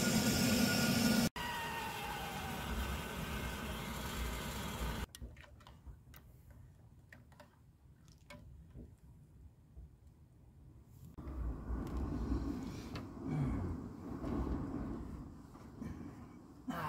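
Gas canister camp stove burner hissing steadily under a stainless kettle for the first few seconds, then a quiet stretch with a few light clicks, then a low rumbling noise from about two thirds of the way in.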